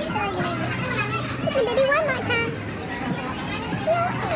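Voices talking casually at a table, over restaurant chatter and background music.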